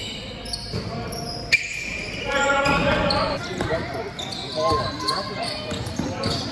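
Gym basketball game sounds: a basketball bouncing on the court and sneakers squeaking, with players' voices calling out, all echoing in a large gym.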